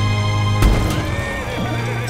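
A held chord of trailer music breaks off with a sharp hit about half a second in. A horse whinnies after it over a low drone.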